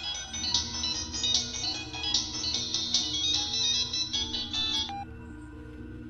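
A mobile phone ringtone playing a bright, high-pitched melody. It cuts off suddenly about five seconds in, as the call is answered.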